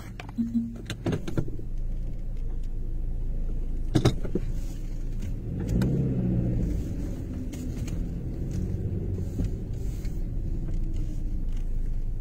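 Car on the move: a steady low engine and road rumble, swelling louder about six seconds in and easing off again, with a single knock about four seconds in.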